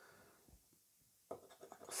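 Near silence, then faint scraping of a plastic scratcher disc across a scratchcard's panel, in a few short strokes after about a second.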